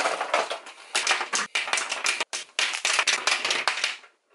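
A dense clatter of plastic art markers tumbling and knocking onto a glass desktop, in quick rapid clacks with a couple of brief pauses, stopping near the end.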